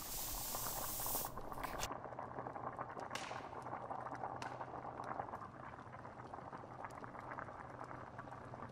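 Stew bubbling in a pot, a dense steady bubbling with scattered light crackles. For the first two seconds a loud hiss sits over it and cuts off suddenly.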